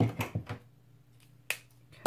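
Light knocks and taps of small objects handled on a tabletop cutting mat in the first half second, then a single sharp click about a second and a half in, over a faint steady hum.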